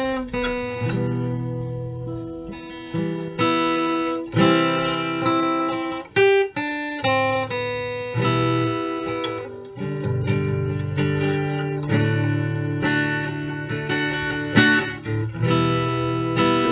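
Giannini acoustic guitar strummed in a steady rhythm, an instrumental intro moving from E minor to A minor seventh chords and back.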